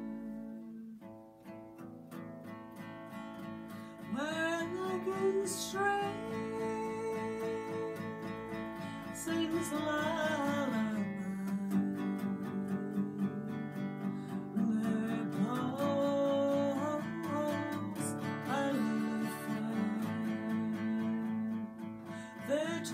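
Acoustic guitar strummed in a slow, steady accompaniment, with a woman's voice singing a slow melody over it from about four seconds in.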